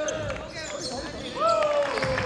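A basketball being dribbled on a wooden gym floor, with players' voices calling out on the court; a long, slowly falling call starts near the end.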